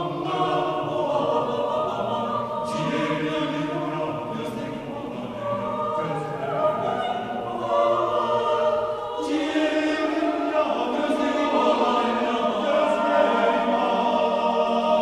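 Mixed a cappella choir of women's and men's voices singing sustained, overlapping harmony with no instruments, a new phrase swelling in about three seconds in and again about nine seconds in.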